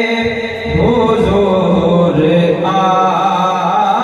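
Male voice singing a naat (Urdu devotional poem in praise of the Prophet) into a microphone, in a slow, chant-like melody with long held and bending notes.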